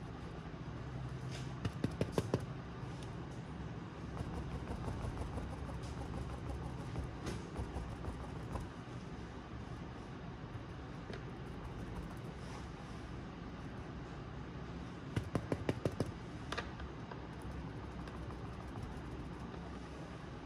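Paintbrush dabbing on a stretched canvas and palette, in two quick runs of sharp taps, about two seconds in and again around fifteen seconds. A steady low rumble runs underneath.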